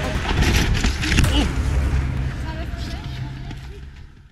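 Indistinct voices over a steady low rumble of outdoor race-course sound, gradually fading out toward the end.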